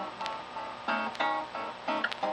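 Acoustic guitar playing a blues phrase between sung lines: a few plucked notes and chords that ring on, struck near the start, about a second in and near the end.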